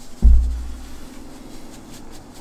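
A deep electronic bass boom, an edited-in sound effect, hits suddenly about a quarter second in and fades away over a second or so.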